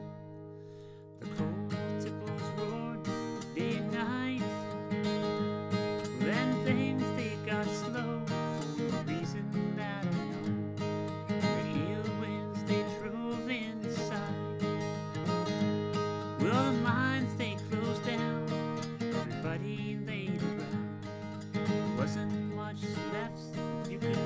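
Steel-string acoustic guitar strummed and picked in a steady country-folk rhythm, with a brief drop in level about a second in before the playing comes back in full.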